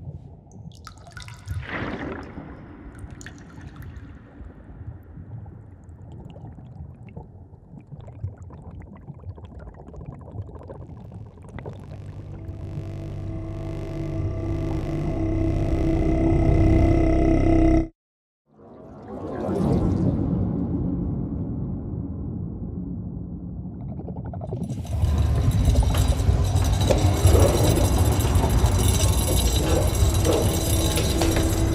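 Eerie horror-film drone and sound design, low and watery with held tones, swelling to a peak before cutting off abruptly to silence just past halfway. It returns and, about five seconds before the end, grows into a loud, dense rushing wash with a low rumble under it.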